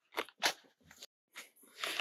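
Footsteps crunching on a gravel trail covered in dry leaves: several short, separate crunches about two seconds' worth of walking.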